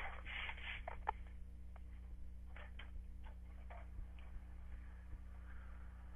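A steady low hum with faint, irregular small clicks and ticks, one sharper click about a second in.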